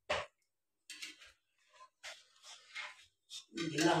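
Steel ladle stirring milk in a large steel pan, with a short knock right at the start and faint intermittent scraping after it. A voice comes in near the end.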